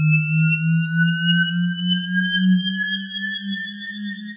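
Synthesized electronic outro sound: a low, pulsing drone with several thin whistling tones above it, all gliding slowly upward in pitch and gradually getting quieter.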